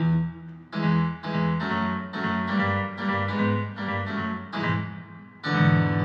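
Digital stage keyboard played with a piano sound, with no singing: a run of struck chords, two or three a second, with a brief break about half a second in and another near the end, when a fuller chord is struck.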